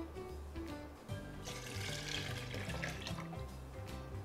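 Milk being poured from a bowl into a blender jar: a liquid pour through the middle, lasting over a second, with quiet background music throughout.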